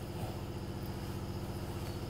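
A steady low mechanical hum with a faint regular pulse.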